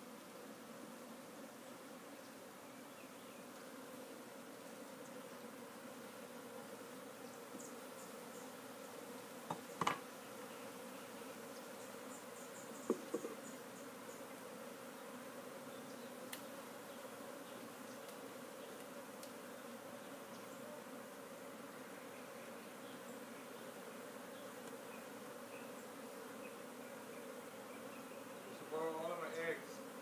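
A mass of honeybees buzzing in a steady, even drone around an opened colony. There are two light knocks, about ten and thirteen seconds in.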